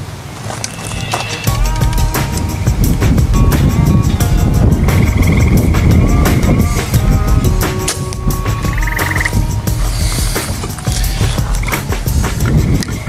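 A compound bow being drawn and shot: clicks and knocks from the bow and arrow over a steady rumble of wind and handling on the microphone. Frogs trill twice in the background, about five and nine seconds in.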